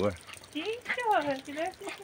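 Speech: a higher-pitched voice talking more quietly than the loud voice just before, in a few short phrases.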